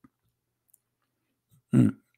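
Near silence with one faint click just after the start, then a man's short 'hmm' near the end.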